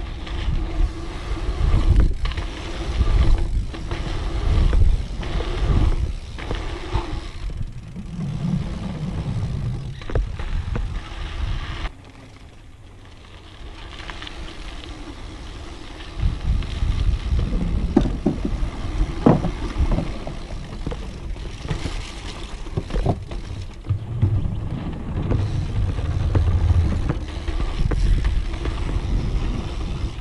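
Wind rushing over an action camera's microphone, with the hard-pumped slick tyres of a rigid dirt-jump bike rolling fast over a packed-dirt trail and the bike knocking and rattling over the bumps. About twelve seconds in it goes quieter for a few seconds, then picks up again.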